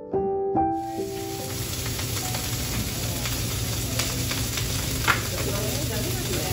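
Shredded hash browns sizzling on a flat-top griddle, a steady frying hiss that comes in about a second in as a few piano notes fade out. A short sharp click about five seconds in.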